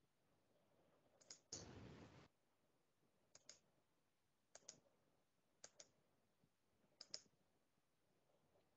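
Faint computer mouse clicks: a single click, a short burst of hiss about a second and a half in, then four quick double clicks a little over a second apart as settings dialogs are worked through.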